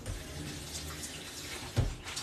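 Kitchen sink tap running as hands are washed under it, with one dull thump near the end.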